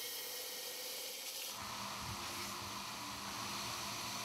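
A steady, even hiss with no tune or voice in it. A faint low rumble joins about a second and a half in.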